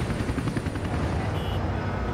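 Helicopter running overhead, a steady low, fast rotor chop.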